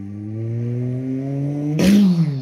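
A man's long, drawn-out groan, slowly rising in pitch, that swells into a louder strained cry near the end and then falls.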